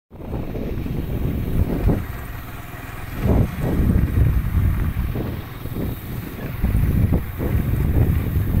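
A vehicle running along a road, with strong wind buffeting the microphone in uneven gusts.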